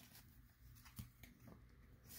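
Near silence, with a few faint, short ticks of paper baseball cards being flipped through in the hand, the clearest about a second in.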